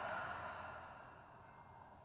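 A long audible exhale, a sigh breathed out, fading away over about a second and a half.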